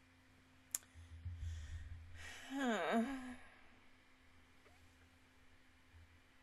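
A woman's wordless vocal reaction close to the microphone: a sharp click, a breath, then a loud sigh-like voiced sound whose pitch dips and rises again.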